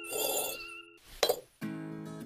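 Background music with wavering held notes, and one sharp clink a little over a second in from a miniature clay brick being set down or tapped in place.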